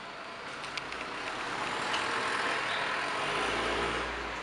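A road vehicle passing close by: a steady rush of engine and tyre noise that swells over the first couple of seconds and holds, with a low rumble near the end.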